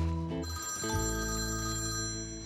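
Mobile phone ringtone playing a short melody of quick notes, then settling on a held chord about halfway through.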